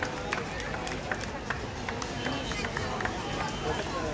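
Crowd talking amid quick, irregular footsteps and taps as the dragon dancers move about on paving.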